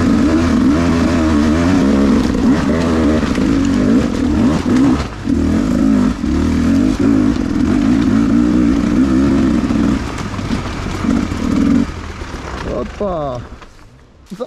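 Enduro motorcycle engine running at low revs, the throttle worked on and off so the pitch keeps wavering as the bike climbs slowly. It dies down about twelve seconds in, with one short rise and fall in pitch near the end.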